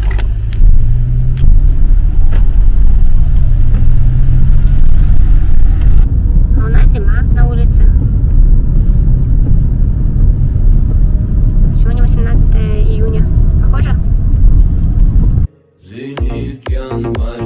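Car driving on a wet road, heard from inside the cabin: a loud, steady low rumble of engine and tyres. Brief voices come in twice, and the rumble cuts off suddenly just before the end.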